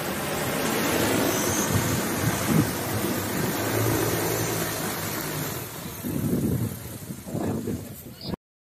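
Large multi-rotor agricultural seeder drone's propellers humming as it descends to land. The hum weakens and becomes uneven near the end.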